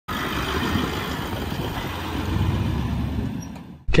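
Steady motor-vehicle rumble that fades away near the end and then cuts off abruptly.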